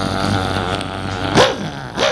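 A puppeteer's wordless, character-voice vocalisation for a wayang kulit puppet: a long, low-pitched voice that leaps up into a loud, short cry about one and a half seconds in, then slides back down.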